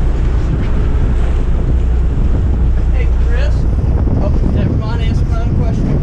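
Wind buffeting the microphone over the steady low drone of a sportfishing boat running at sea, with waves washing along the hull.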